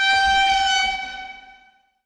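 A sound effect: one held, steady pitched tone rich in overtones, horn-like, loudest in the first second and fading away shortly before the end.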